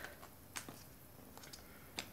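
A few faint, light clicks of a clear plastic bead storage box being handled and picked at with the fingers, the sharpest click near the end.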